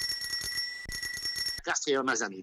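A steady high-pitched censor bleep masks a spoken address in a recorded voice-chat exchange. It cuts off about a second and a half in, and the voice comes back.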